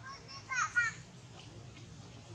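Macaque calls: a quick run of short, high-pitched squeaks, bunched in the first second.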